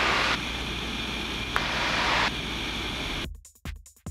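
Steady engine and wind noise of a Citabria light aircraft in cruise, heard in the cockpit, with a brief click about a second and a half in. About three seconds in it cuts off suddenly and electronic music with a steady beat takes over.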